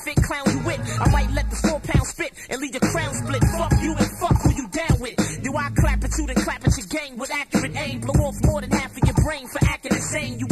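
Hip-hop music: a rapped vocal over a beat with a deep bass line.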